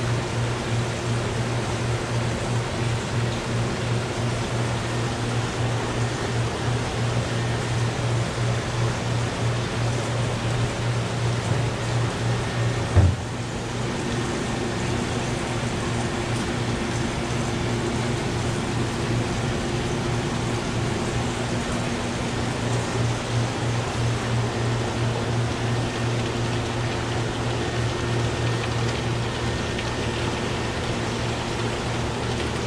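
Steady hum and rushing-water hiss of an aquarium shop's tank filtration, with a short thump about thirteen seconds in.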